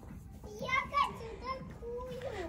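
A young child's voice: a few short, high-pitched utterances between about half a second and a second and a half in.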